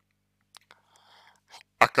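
A pause in a man's talking with only faint soft noises, then his voice resumes near the end.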